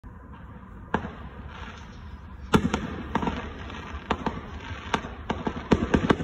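Fireworks going off, about a dozen sharp bangs at irregular intervals. The bangs come closer together near the end, and the loudest falls about two and a half seconds in.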